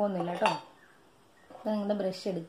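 A woman talking, with a spoon giving a single clink against a small glass bowl of paste about half a second in.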